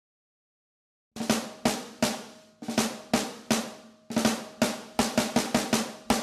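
Snare drum playing the song's intro pattern, starting about a second in after silence. The strokes come in short phrases, and they quicken into a closer run near the end.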